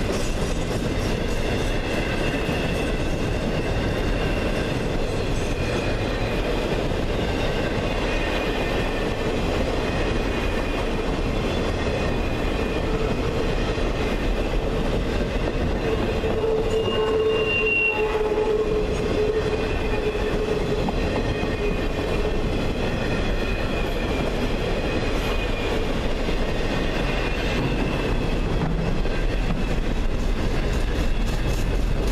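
Container flatcars of a freight train rolling past close by: a steady rumble of steel wheels on the rails, with thin high squealing tones from the wheels coming and going, loudest a little past halfway.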